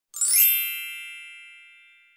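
A bright chime sound effect: a quick rising glittery shimmer, then a ringing ding that fades out over about two seconds.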